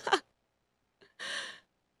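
A woman's single short, breathy sigh into a handheld microphone, about a second in.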